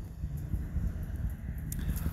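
Low, steady wind rumble on the microphone, with a few faint clicks near the end.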